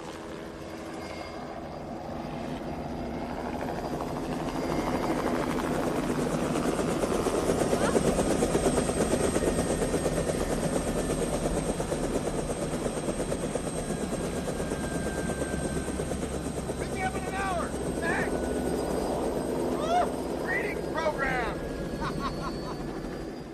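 Light turbine helicopter coming in to land, its rotor chop growing louder over the first several seconds as it nears. It then keeps running steadily once down on the pad.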